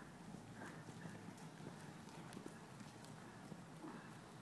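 Faint hoofbeats of a horse moving over the soft dirt footing of an indoor riding arena, irregular soft thuds over a low steady hum.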